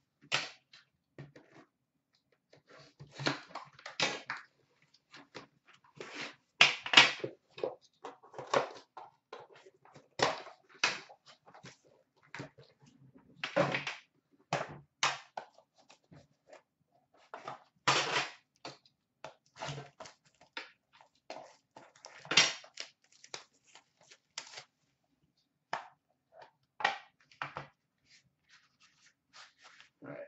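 Hands handling and opening a metal trading-card tin: an irregular string of separate clicks, taps, scrapes and crinkles with short quiet gaps between them.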